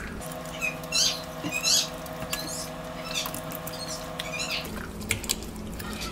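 Wet squelching of a hand rubbing jerk marinade into the skin of a raw whole turkey, about five short squishes roughly a second apart, over a steady hum that stops near the end.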